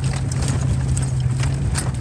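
A 4x4's engine running steadily under load while climbing a muddy, rutted dirt track, heard from inside the cab, with scattered clicks and knocks over it.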